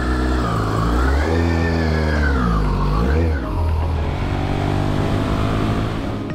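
Yamaha R1 sport bike's inline-four engine revving lightly, its pitch rising and holding for a second or so, dropping back, blipping once more about three seconds in, then settling to a steady idle.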